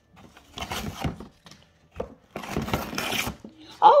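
Cardboard toy box and plastic packaging being pulled and torn by hand, in two rustling bursts.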